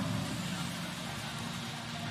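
Steady background noise of a robotics competition arena, with a faint low hum running under it.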